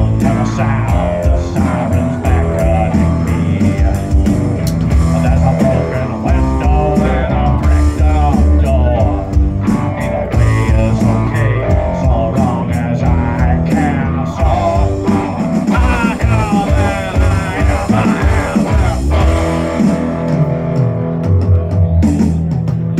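Live rock band playing an instrumental passage: electric guitar lead with bent, wavering notes over upright bass and drum kit.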